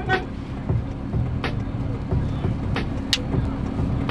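A car's engine idling, heard from inside the closed cabin as a steady low rumble, with a few sharp clicks over it.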